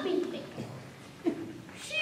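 A child's voice making a few short, high-pitched vocal sounds that fall in pitch.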